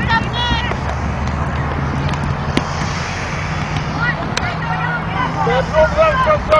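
Background voices of people, including high children's voices, talking and calling out over a steady low rumble. A couple of sharp knocks sound in the middle.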